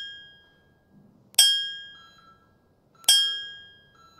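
A bell-like chime, such as a workout interval timer's ding, struck twice about a second and a half apart, each ring fading out; the tail of an earlier chime fades at the start. It marks the rest before the next exercise.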